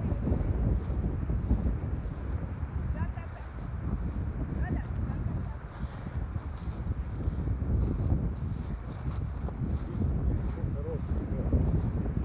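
Wind buffeting the camera microphone, a steady low rumble that swells and eases in gusts.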